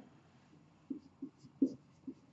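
Marker pen writing on a whiteboard: a few short, faint strokes, starting about a second in.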